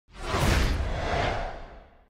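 A whoosh sound effect over a deep rumble, swelling in fast and then fading out over about a second and a half, its high end dulling as it dies away.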